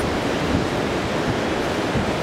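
Steady wash of surf breaking along a sandy beach, mixed with wind rumbling on the microphone.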